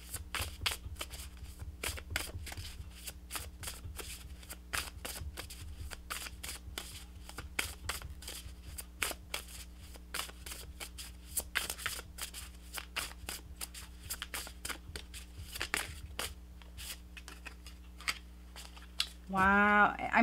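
A deck of oracle cards shuffled by hand: a long run of quick card flicks and slaps that thins out near the end.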